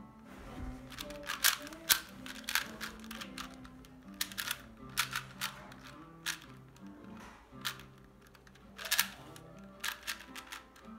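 A plastic 4x4 speed cube being turned by hand, its layers clicking and clacking in quick, irregular runs; the sharpest clicks come about two seconds in and again near the end. Quiet background music plays underneath.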